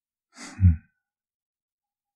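A man's deep voice giving one short, soft sigh: a breath that turns into a low hum falling in pitch, about half a second long.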